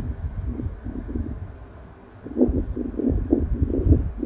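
Air from an electric fan buffeting the microphone: uneven low rumbling gusts with a quick flutter of short bursts, louder from about two seconds in.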